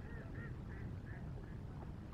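Faint goose honking: a quick run of about five calls in the first second and a half, over a steady low rumble.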